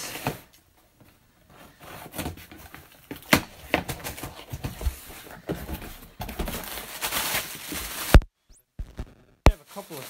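Scissors slitting the packing tape on a cardboard box, then the cardboard flaps pulled open and plastic wrapping rustling, heard as scattered clicks, scrapes and crinkles. The sound cuts off suddenly about eight seconds in.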